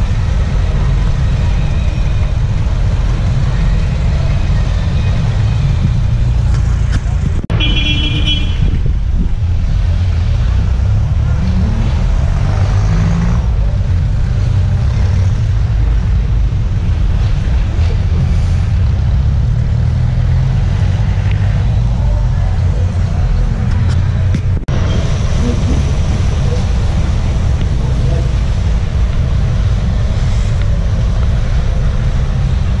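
Street traffic noise on wet city roads with a steady low rumble, and a short vehicle horn toot about eight seconds in. The sound drops out for an instant twice, about seven and twenty-five seconds in.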